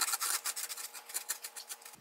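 Crunchy Kooshy sourdough croutons being chewed: a rapid run of dry crackles and crunches, loudest at first and thinning out toward the end.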